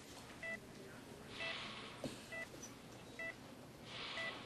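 Bedside heart monitor beeping about once a second, each beep a short pitched blip, tracking a critically ill patient's heartbeat. A soft hiss swells up twice between the beeps.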